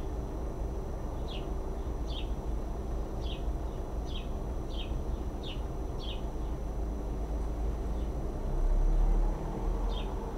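A bird chirping: about seven short, falling chirps, one roughly every second, over a steady low rumble that swells briefly near the end.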